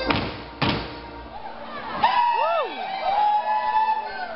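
Two heavy thumps of Schuhplattler dancers' shoes landing on the floor, about half a second apart, as the dance music stops. About halfway through come high calls that swoop up and down in pitch and then hold.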